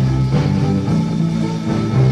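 A 1965 garage rock recording, transferred from an acetate disc: an instrumental passage with electric guitar and drums playing, with no singing.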